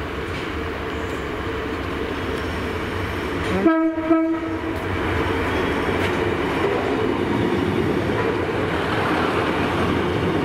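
Class 153 diesel multiple unit arriving along the platform, its engine and wheels growing louder as it draws near. About four seconds in it gives a short horn blast, broken into two.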